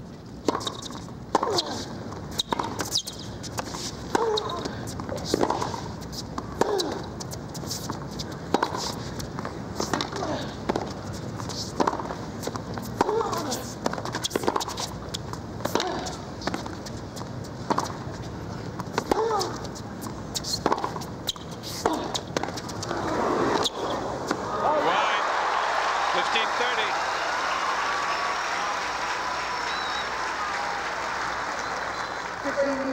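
A long tennis rally: the ball is struck about every 1.2 seconds with crisp racket hits, several followed by short vocal grunts. After about 24 seconds the rally ends and a stadium crowd applauds and cheers.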